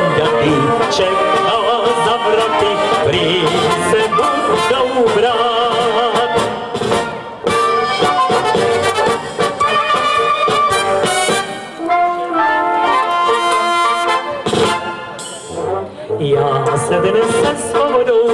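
Folk brass band music: clarinets and trumpets carry the melody over tubas and a drum kit.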